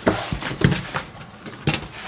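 Canvas tote bag rustling as it is handled and laid flat on a cutting mat, with a cutting board inside it, and a few short knocks as it comes down.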